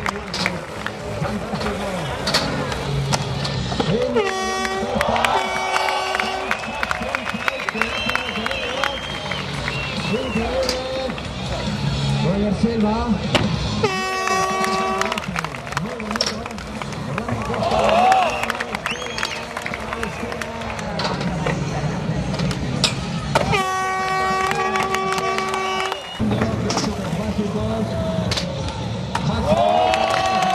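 Air horns blown in the crowd three times, short blasts about 4 and 14 seconds in and a longer one of about two and a half seconds near the end. Between and under them, crowd noise and a skateboard rolling and clacking on the ramps.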